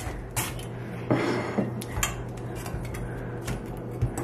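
Cabbage being sliced on a stainless-steel mandoline slicer set to its thinnest cut: the head is pushed back and forth across the metal blade in a series of separate scraping strokes.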